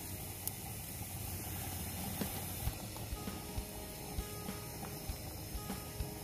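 Soft background music over a steady hiss with scattered light pops, from steaks sizzling over charcoal on a small cast-iron grill.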